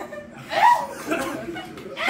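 Several people laughing and chuckling, loudest about half a second in.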